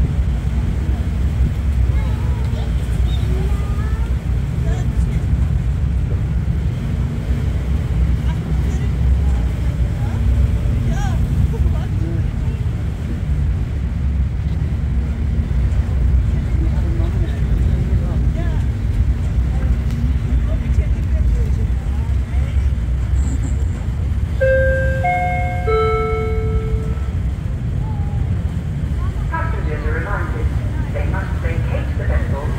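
Woolwich Ferry's engines running, a steady low rumble with a faint hum over it, heard from the open vehicle deck. Near the end there is a brief run of short high tones at different pitches.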